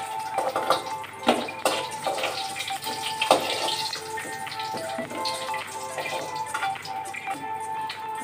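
Background music with a steady held tone, over oil sizzling in a kadhai as fried potatoes are lifted out onto a steel plate. A few sharp metal clinks come in the first few seconds.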